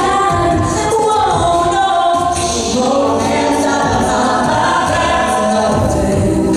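Mixed-voice a cappella group singing a pop song: a female lead over layered, sustained backing voices, with a steady beat in the low end.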